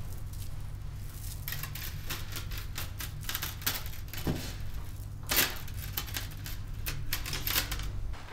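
Irregular light tapping and clicking on hard objects, a quick uneven run of short taps starting about a second and a half in, the loudest a little past the middle, over a steady low hum.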